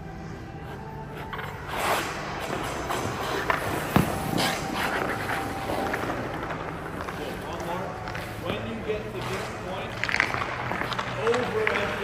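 Hockey skate blades scraping on rink ice, with a few sharp knocks of stick or puck, the loudest about four seconds in.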